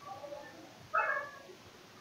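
A domestic cat meowing once, a short call about a second in, with fainter sounds just before it.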